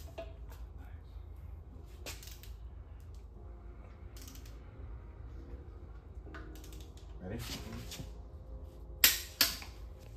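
Torque wrench working the last cylinder-head bolt of a BMW M52 engine up to 85 ft-lb: a few scattered metallic clicks over a low hum, then two sharp, loud clicks about half a second apart near the end.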